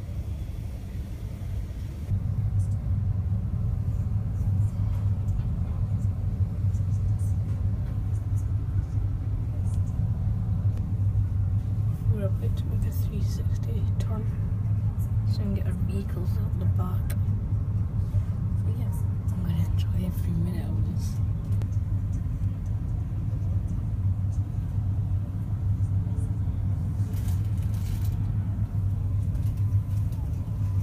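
Steady low rumble of a car ferry under way, louder from about two seconds in, with faint distant voices in the middle stretch.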